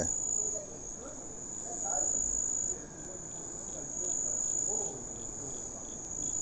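A chorus of night insects, crickets by its sound, chirring in one steady, high-pitched trill.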